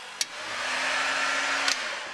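Handheld electric heat gun blowing hot air. A click comes about a quarter second in and the blowing grows louder with a low motor hum. Another click comes near the end and the sound drops away.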